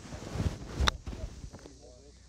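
A swing's rush of air building for about a second, then one sharp crack as a golf wedge strikes a ball.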